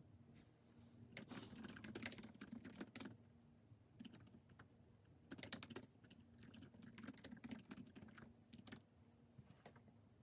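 Faint typing on a laptop keyboard: three bursts of rapid key clicks with pauses between, the longest lasting about two seconds.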